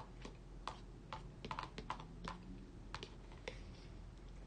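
A metal spoon clicking against a plastic bowl while soup is eaten: about a dozen light, sharp clicks, several in quick succession near the middle.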